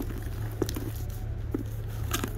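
A steady low hum with faint rustling and two soft taps about half a second and a second and a half in, from a handbag being handled.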